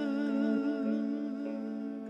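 Azerbaijani mugham ensemble playing a slow, unmetered instrumental passage: a low note held steady under a wavering melody line with wide vibrato, easing off slightly in loudness.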